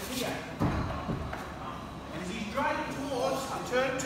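Voices talking in a large gym hall, with a dull thud on the mat about half a second in as two grapplers close in for a throw.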